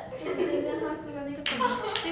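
Two sharp hand claps close together near the end, over a young woman's talking.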